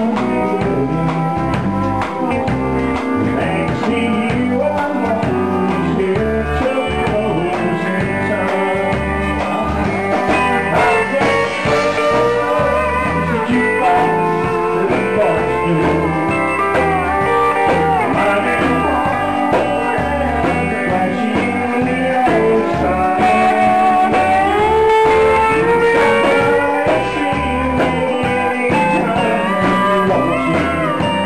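Live honky-tonk country band playing a steady shuffle on pedal steel guitar, electric guitar, bass and drums, with sliding, gliding lead lines.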